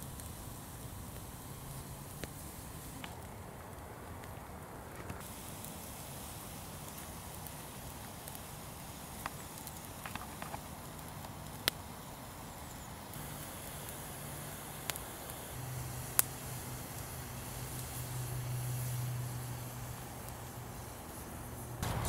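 Small wood campfire of dead sticks burning quietly, with a sharp crackle or pop every few seconds. A low, steady distant drone comes up in the later part and is the loudest sound near the end.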